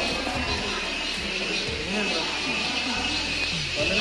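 Indistinct voices of people talking, with music playing underneath.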